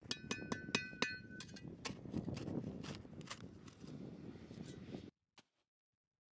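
Steel shovel digging into hard, compacted ground: sharp clinks with a short metallic ring in the first second and a half, then the blade scraping and crunching through dirt, cutting off suddenly about five seconds in.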